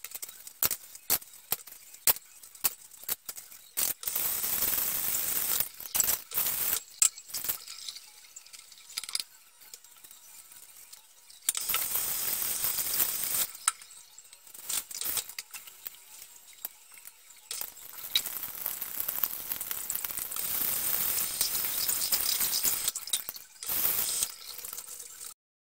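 Dishes and utensils clinking and knocking as they are scrubbed in a kitchen sink, with the tap running in bursts: briefly about four seconds in, again around twelve seconds, and for several seconds from about eighteen seconds until near the end.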